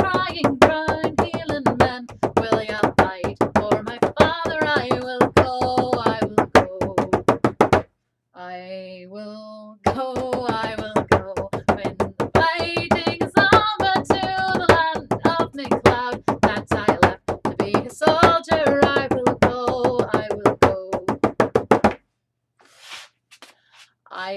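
Bodhrán with a synthetic head beaten in a steady rhythm while a woman sings along. The drumming and singing break off briefly about eight seconds in, then stop about two seconds before the end.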